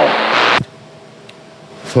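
CB radio speaker hissing with static from an incoming station's signal, which cuts off abruptly about half a second in as that station unkeys, leaving only a faint low hiss.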